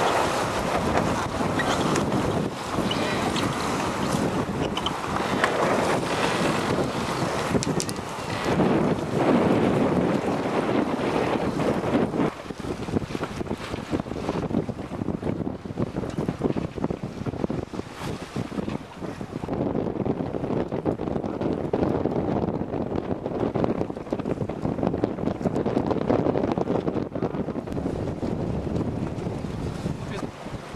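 Gusty wind buffeting the microphone over choppy water, rough and uneven, becoming a little quieter and more broken after about twelve seconds.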